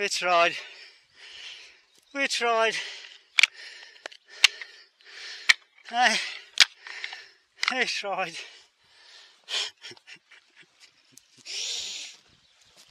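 A man's voice laughing and exclaiming without clear words, in short downward-bending bursts with breathy gasps between them. Several sharp clicks come in the middle of the stretch. No chainsaw is running.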